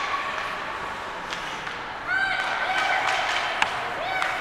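Ice hockey play in an indoor rink: skates scraping over a steady haze of arena noise, with scattered clacks of sticks and puck and one sharp crack near the end. About halfway through, a voice calls out in a long, held shout.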